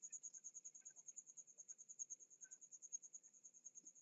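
Near silence: faint room tone with a steady, evenly pulsing high-pitched chirp and a couple of faint clicks.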